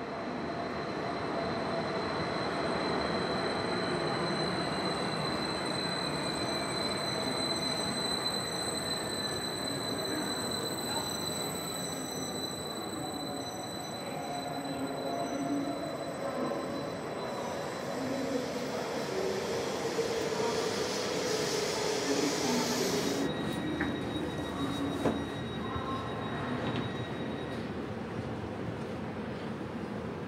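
An SBB double-deck S-Bahn train pulls into an underground station. There is a steady rumble with a high, steady wheel squeal, and a whine that falls in pitch as the train slows to a stop. About twenty seconds in comes a brief hiss, then a single click.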